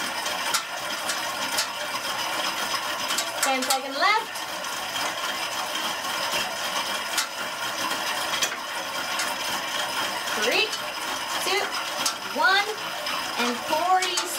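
Spinning bike's flywheel and drive whirring steadily as it is pedalled fast through a hard interval, with scattered light metallic clicks. A short rising squeal comes about four seconds in, and several more come about a second apart near the end.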